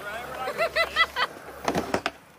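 A high-pitched voice in a quick run of about five short rising-and-falling syllables, like a laugh or playful call, followed by a few sharp clicks near the end.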